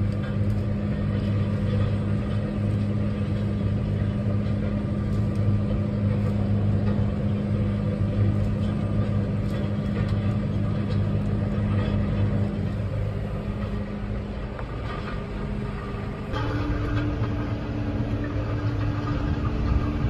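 Tractor engine running steadily, heard from inside the cab while towing a set of field rollers. About 16 seconds in, the engine note changes abruptly to a higher hum.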